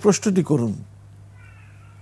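A man speaking for under a second, then a steady low hum with a few faint, brief high tones.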